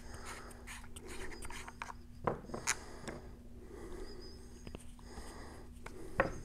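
Faint rubbing and handling of small plastic fittings being worked off a float valve by hand, with a couple of sharp clicks about two and a half seconds in, over a steady low hum.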